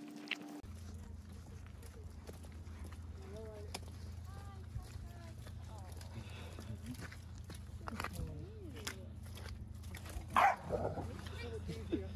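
Dogs playing and scuffling: a few short yelps and whines, then one loud bark about ten seconds in.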